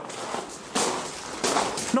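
Footsteps crunching on a loose gravel floor, two heavier steps about a second in and near the end.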